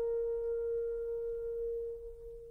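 Background classical music: a single long note, likely a French horn, held steady with faint overtones.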